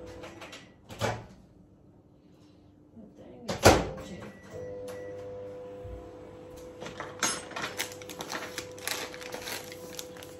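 Built-in microwave oven melting butter. Its door clicks open about a second in and shuts with a loud bang near the middle, then the oven starts again and runs with a steady hum. Light knocks and rustling of handled packets come toward the end.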